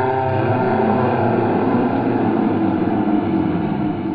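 A man's voice holding one long, steady, low sung note.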